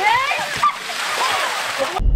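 Water poured from a large orange cooler onto a seated person, splashing over them and onto the pavement, with people's voices calling out over it.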